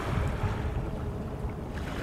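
Wind buffeting an outdoor microphone: a low, uneven rumble with a soft hiss above it.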